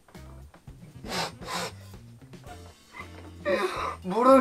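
Stifled laughter: two short, sharp breathy bursts about a second in, and more breathing near the end, over quiet background music with a steady bass line.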